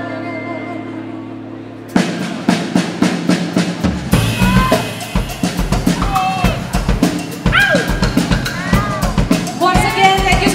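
Live band playing: a held chord rings and fades, then a drum kit comes in with a steady beat about two seconds in. About two seconds later bass and a sung melody join for full-band playing.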